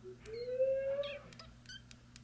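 A dog whining once, a slightly rising, then level whine lasting about a second, followed by a few light clicks.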